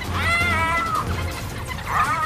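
Two high, wailing animal squeals, each under a second long, the pitch rising a little and then falling; the first starts just after the beginning, the second near the end. A steady low music bed runs underneath.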